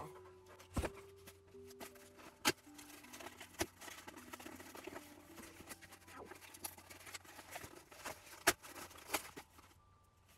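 Cardboard book packaging being torn and pried open by hand: crackling and rustling with several sharp snaps, the loudest about two and a half seconds in and again near the end, under soft background music of slow sustained notes.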